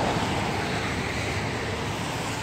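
Steady outdoor background noise: a low rumble with hiss, unbroken and even in level.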